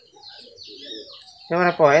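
Faint, scattered bird chirps, then a man's voice cuts in loudly about three-quarters of the way through.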